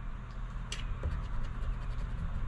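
A coin scraping the coating off a paper scratch-off lottery ticket in a few short strokes.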